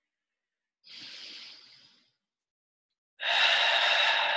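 A woman breathing deeply close to the microphone: a soft breath about a second in, then a much louder, longer breath starting near the end.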